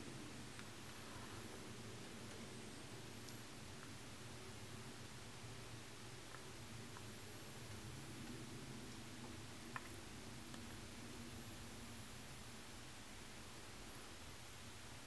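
Quiet room tone: a steady faint hiss with a low hum, and one small click about ten seconds in.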